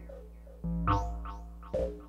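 Electronic music from modular synthesizers: a steady low bass drone under short, plucked-sounding notes that fall quickly in pitch. After a quieter start, the notes come in again about two-thirds of a second in, a few in quick succession.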